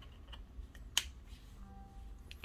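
A USB-C charging plug clicking into a Google Pixel phone's port: one sharp click about a second in, with a few lighter ticks of the plug and cable being handled before it.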